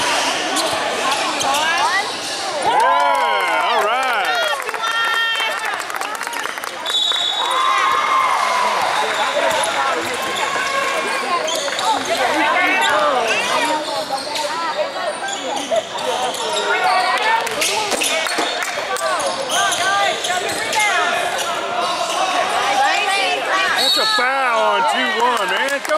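A basketball game in a gym: a ball bouncing on the hardwood court and sneakers squeaking, under steady chatter from players and spectators, all echoing in the hall.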